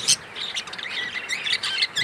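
Budgerigars (parakeets) chattering as the male mounts the hen: a fast run of sharp chirps breaks off right at the start, then softer, continuous warbling and chirping.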